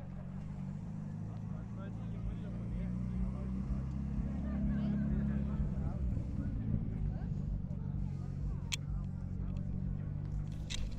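A car engine running steadily, a low hum that grows louder toward the middle and then holds, with people talking in the background.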